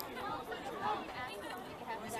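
Spectators chattering nearby, several voices talking over one another with no clear words.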